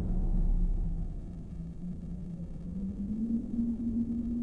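Dark trailer-score drone: a deep rumble under one held low tone that wavers slightly and steps up in pitch a little past three seconds in.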